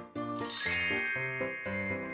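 A bright, sparkly chime sound effect rings out about half a second in and rings on for about a second, over light children's background music playing short repeated notes.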